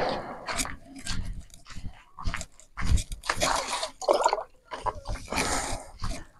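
Footsteps crunching on a gravel path, irregular short steps with some handling noise.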